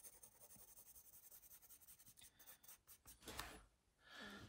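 Pencil shading on sketchbook paper: faint, quick, repeated scratchy strokes, a little louder about three seconds in.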